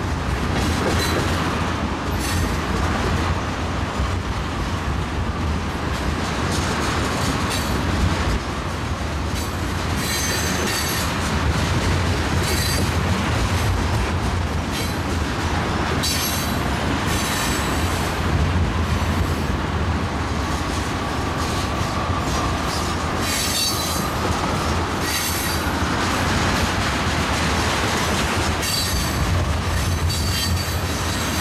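Freight train of tank cars rolling past close by: a steady rumble of steel wheels on the rails, with a click every second or two at the rail joints and brief high-pitched wheel squeals now and then.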